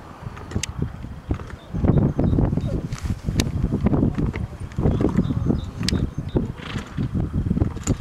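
Wind buffeting the microphone in gusts, over the faint hoofbeats of a horse trotting on a sand arena surface, with a few sharp clicks.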